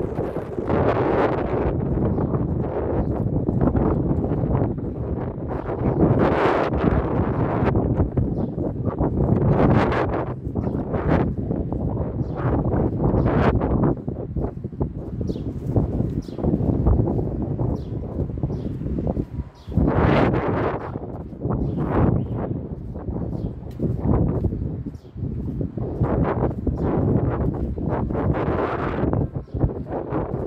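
Wind buffeting the phone's microphone in uneven gusts, a loud low rumble that swells and drops every few seconds.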